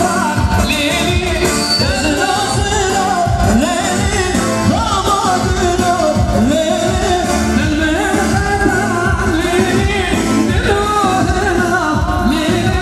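Kurdish wedding band music for a line dance: a singer's ornamented, wavering melody over a full, loud accompaniment that never pauses.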